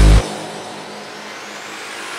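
Hardstyle track: a last heavy distorted kick-and-bass hit cuts off just after the start, leaving a quieter noisy wash with a slowly rising sweep, a build-up in the music.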